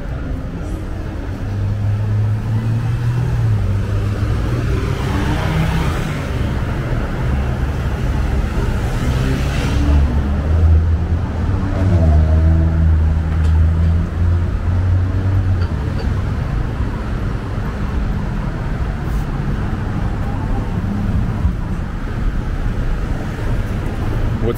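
City street traffic: motor vehicle engines running and passing close by, a steady low hum that swells in the middle, with an engine's pitch sliding up and down at two points.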